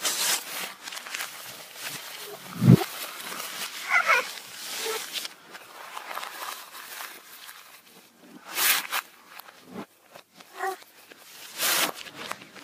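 A girl's voice played backwards: short, odd yelps and squeals that form no words. Near the end, bursts of crinkling paper as a sheet is crumpled or smoothed.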